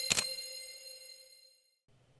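Intro logo sound effect: a single sharp ding-like hit just after the start, its ringing tones fading away over about a second and a half.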